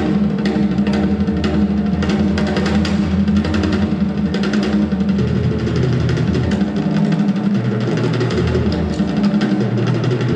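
A rock drum kit played live: dense snare and tom strokes and cymbal crashes over a held low note from the band. The note changes about halfway through.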